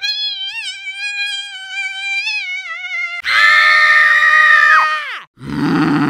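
Grey domestic cat giving a long, drawn-out meow that wavers slightly in pitch for about three seconds, followed by a second, louder call that drops away about five seconds in.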